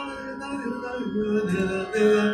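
Harmonium sounding a steady, sustained chord of reed tones, joined about a second in by a man's voice singing a long held note that wavers slightly in pitch, in the style of Hindustani raga singing.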